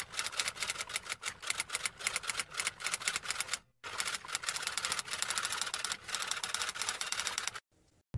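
Typewriter typing sound effect: a rapid run of key clacks. It breaks off briefly a little before halfway and stops shortly before the end.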